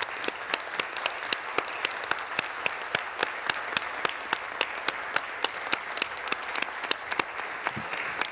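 Members of a legislative chamber applauding: a steady round of clapping from a group, with single sharp claps standing out.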